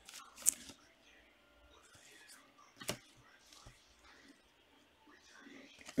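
Trading cards handled in gloved hands: two short sharp clicks, about half a second and three seconds in, with faint rustling between.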